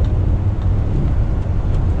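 Steady low rumble of a semi-truck's diesel engine and road noise, heard inside the cab while cruising on the interstate.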